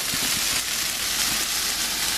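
Pumpkin gnocchi and cherry tomatoes sizzling in olive oil in a frying pan as the gnocchi brown, a steady hiss.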